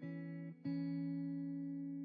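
Guitar music: a chord plucked about half a second in and left to ring, slowly fading.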